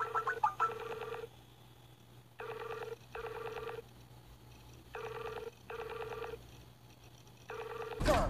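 Skype outgoing video-call ringing tone on a Mac. It opens with a quick run of short blips as the call is placed, then rings in pairs of short tone bursts repeating about every two and a half seconds while the call waits to be answered.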